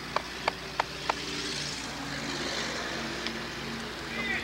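Hammer tapping on a concrete bridge deck with sharp, quick taps, about three a second, which stop after about a second; the deck is being sounded for hollow, delaminated areas that need removal. A steady rushing noise follows.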